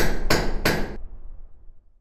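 Produced logo sting: three hammer strikes in quick succession, about a third of a second apart, each ringing briefly. Beneath them a low rumble fades away over the next second.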